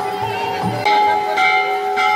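Metal temple bells ringing, struck again about a second in and once more half a second later, each ringing tone carrying on under the next.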